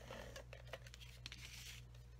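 Faint rustling of cardstock being handled, with a few light clicks from a plastic tape-runner adhesive dispenser being picked up.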